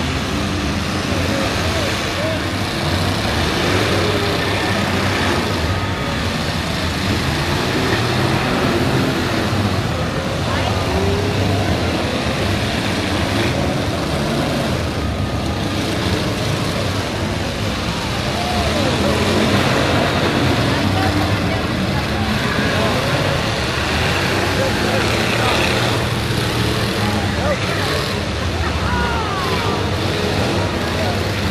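Several demolition-derby stock cars' engines running and revving together, a loud, continuous din that rises and falls in pitch, with crowd voices mixed in.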